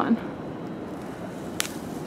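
Steady outdoor background hiss, with a brief rustling brush near the end as the handheld camera is swung away from the branch.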